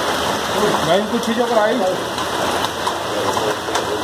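Steady rush of a small stream's water running over rocks and rubbish in a narrow concrete channel, with people's voices talking indistinctly over it during the first half.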